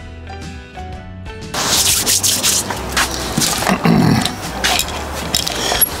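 Quiet background music with a simple melody for about the first second and a half. Then louder rustling and scraping handling noise with sharp clicks, as tools and an adhesive tube are picked up and handled at a workbench.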